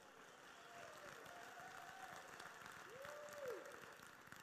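Faint audience applause, with a couple of brief voices calling out over the clapping.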